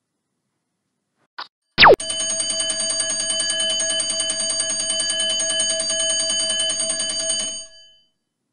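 Countdown timer alarm going off as the timer runs out. A short blip and a quick falling swoop are followed by loud, rapid alarm-clock-style bell ringing that holds steady for about five and a half seconds and then stops.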